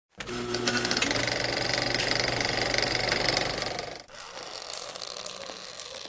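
A rapid mechanical rattling sound effect with a steady low hum under it, running for about four seconds and then cutting off suddenly. Softer scattered clicks follow.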